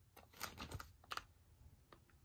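Faint clicks and light rubbing of a plastic VHS clamshell case being handled and turned over in the hand, with a small cluster of clicks about half a second in and a sharper click just after one second.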